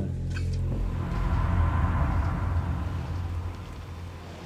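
A low, steady rumbling hum, with a swell of hiss that builds about a second in and fades toward the end.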